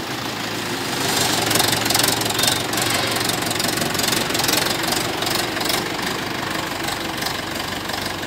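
Four-cylinder diesel engine of a Mahindra 585 DI tractor running steadily at low revs as the tractor moves off slowly.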